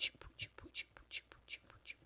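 A woman's voice making a quiet, even run of short breathy hissing sounds with her mouth, about two and a half a second, with no words.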